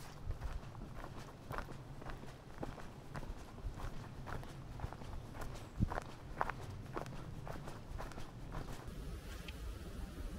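Footsteps of hikers walking at an easy pace on a dirt forest path strewn with dry leaves, a soft crunch about every half second. The steps stop about nine seconds in.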